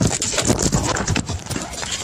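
A rapid, irregular clatter of knocks and scuffing from a handheld phone camera being jostled and rubbed.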